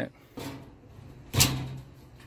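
Stainless steel cabinet door being opened and closed: two short sounds about a second apart, the second louder.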